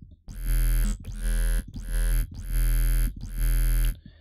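Vital software synthesizer playing a freeform bass patch built on the 'Clicky Robot' wavetable, a test of the patch while it is being built. Five held notes play in a row with a deep low end, each opening with a quick upward sweep in tone.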